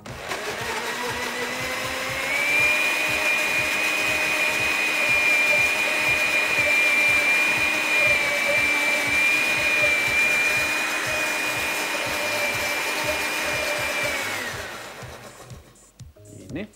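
Countertop blender with a glass jar running, puréeing bananas with milk. The motor's whine climbs a little in pitch over the first two seconds, holds steady, then winds down and stops about a second before the end.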